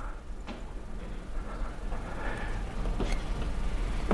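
Room tone of a talk venue: a steady low hum under a faint hiss, with a couple of faint clicks about half a second and three seconds in.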